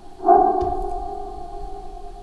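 A single ringing, chime-like tone that strikes about a quarter second in and slowly fades.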